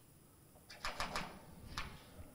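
A few faint, short clicks: a quick cluster about a second in and a single one near the end.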